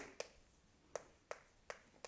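Chalk ticking against a chalkboard while writing: four faint, sharp taps spread through the two seconds, with near silence between them.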